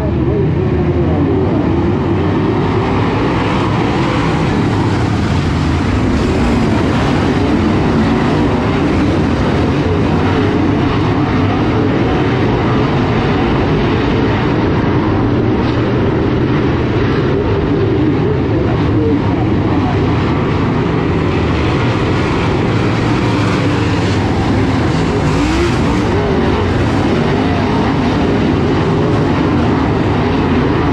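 A field of dirt-track modified race cars at racing speed, many V8 engines running at once in a loud, steady din. Their pitches waver up and down as the cars rev on and off through the turns.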